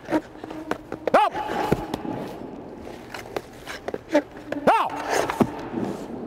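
Hockey goalie skates scraping and pads and stick knocking on the ice as he moves through a lateral drill and drops into the butterfly. There are quick clicks throughout, and two short vocal calls: one about a second in and one just before five seconds.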